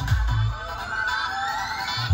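Electronic dance music played loud over a large DJ sound system. The bass beat drops out about half a second in and a rising sweep builds through the rest, leading into a drop.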